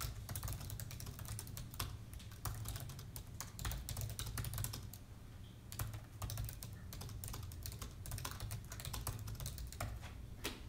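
Typing on a MacBook laptop keyboard: quick, irregular key clicks with a short pause about halfway through, over a low steady hum.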